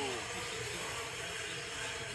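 A man's drawn-out 'whoa' falling in pitch and trailing off at the start, then a steady hiss of indoor track background with a faint, steady high whine of nitro RC buggy engines from about halfway through.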